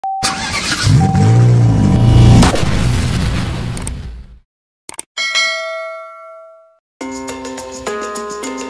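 A car engine starting and being revved, dying away about four seconds in; then a click and a ringing chime that fades out; music begins near the end.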